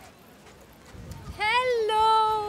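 A woman's voice calling out a drawn-out greeting about a second and a half in, rising in pitch and then held on one steady note, after a quiet stretch.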